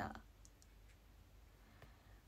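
Near silence after a woman's spoken word ends at the very start, with a few faint clicks about half a second in and again near the end.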